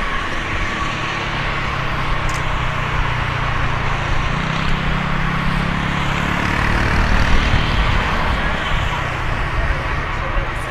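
Jet engines of a taxiing Boeing 747 running at low power: a steady rushing noise with a steady high whine and a low hum underneath.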